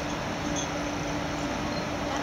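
Steady machine hum with a constant low tone, typical of the blower fans that keep an air-supported hall inflated.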